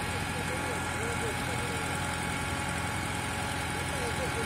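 Isuzu boom-lift truck's engine idling steadily while its aerial boom works.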